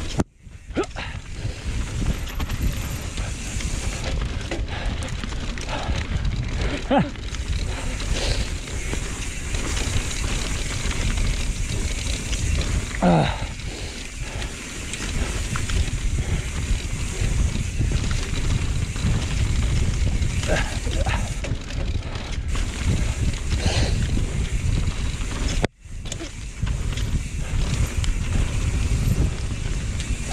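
Wind buffeting an action camera's microphone and mountain-bike tyres rolling over a packed dirt trail during a fast downhill run, a steady rushing rumble.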